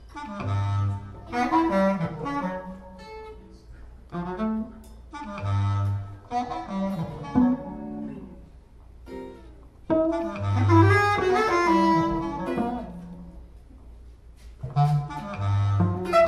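Free-improvised music for bass clarinet, cello and guitar, played in short separate phrases that stop and restart about every four to five seconds, each opening on a low note.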